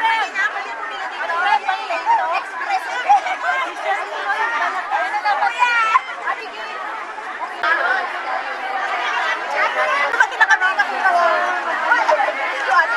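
A crowd of many people chatting at once, their voices overlapping into an unbroken babble.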